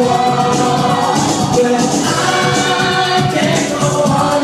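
Loud freestyle dance-pop music over a club sound system, with a man singing into a handheld microphone over the backing track.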